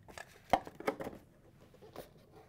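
Small cardboard box holding a brass gas regulator being closed and handled: a sharp knock about half a second in, then a few lighter taps and rustles of the cardboard flaps.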